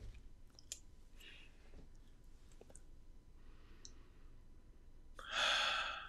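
A man's single long, audible breath about five seconds in, as he smells a fragrance-oil scent strip. Before it there is only faint room tone with a few soft clicks.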